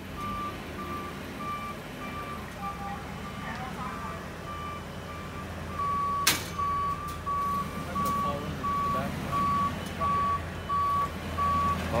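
Forklift's warning beeper sounding about twice a second at one steady pitch over its running engine, growing louder about halfway through. There is one sharp knock just after the midpoint.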